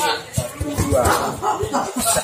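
Several sharp smacks of punches landing on hand pads during martial-arts striking drills, with voices in the hall.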